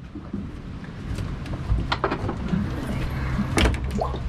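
A fiberglass deck hatch being unlatched and lifted open: a few sharp clicks and knocks, with two low thumps, one just before two seconds in and one near the end.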